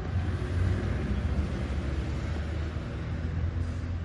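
Steady low rumble with an even hiss of background noise, without speech.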